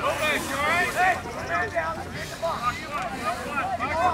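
Several voices calling out and chattering at once across an outdoor sports field, overlapping so no words stand out, over a low rumble of wind on the microphone.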